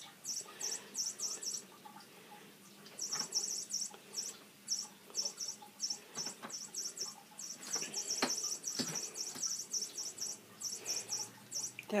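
A light-up squeaky cat toy, dangling from a door handle, giving rapid high-pitched squeaks in repeated bursts as a cat bats at it. A few light knocks come as the cat paws at the toy and the door.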